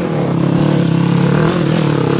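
Dirt bike engine running steadily as the bike climbs a steep, rocky hill.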